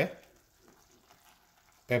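Faint sizzle of a stainless pan of mackerel and vegetables simmering on the stove, heard between words.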